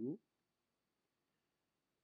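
A man's voice finishing a single spoken word at the start, then near silence: room tone.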